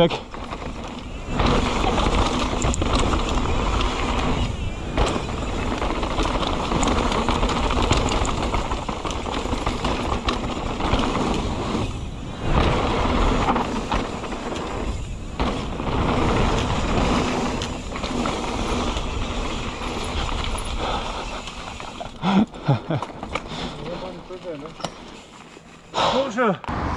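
Mountain bike ridden fast down a dirt trail, heard from a camera on the bike or rider: steady wind rush on the microphone and tyres rolling over dirt and loose stones, with frequent knocks and rattles from bumps. Near the end it gets quieter as the bike slows, with a few short pitched sounds.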